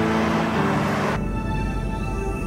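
Suspenseful soundtrack music, shifting to a lower, darker sound a little over a second in.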